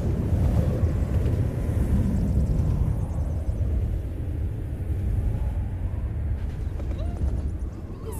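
A steady, deep rumble, loudest over the first few seconds and easing slightly after.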